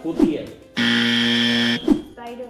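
Tabletop quiz buzzer button sounding one flat, steady electronic buzz of about a second, starting a little before the middle: a player buzzing in to answer. A short voice sound comes just before it.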